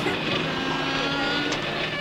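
Steady engine drone from a passing vehicle in street ambience on an old film soundtrack, with a few thin, held tones above a low hum.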